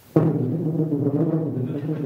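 A tuba starts playing low, loud sustained notes with a sharp attack just after the start.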